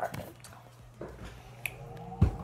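Two light clicks, one about a second in and one near the end, as a glass Nutella jar is moved and set down on a kitchen counter.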